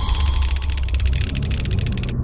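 Cinematic sound-design effect: a rapid pulsing buzz, about twenty pulses a second, over a deep rumble. The buzz cuts off suddenly at the end.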